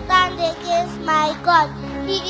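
A girl's high voice speaking short declaimed phrases over backing music of held, sustained chords.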